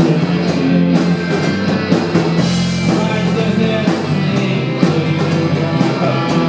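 A live rock band playing, led by electric guitar, with a steady beat.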